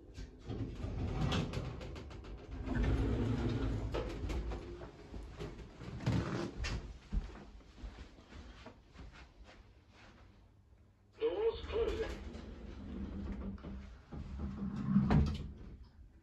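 Orona traction lift's automatic sliding doors opening at the third floor, with footsteps and handling noise as someone steps out, a brief voice about eleven seconds in, and the doors closing with a thump near the end.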